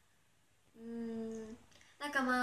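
A woman humming one steady, level note for under a second, starting about a third of the way in.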